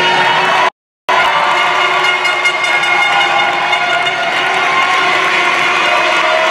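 Arena crowd cheering and shouting, many voices together, with the sound cutting out completely for a moment just under a second in.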